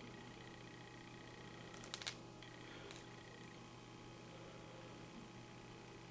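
Near silence: faint room tone with a steady low hum, broken once by a brief faint click about two seconds in.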